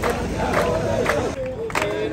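A crowd of protesters chanting slogans together to rhythmic hand-clapping, about two claps a second, with a brief lull about one and a half seconds in.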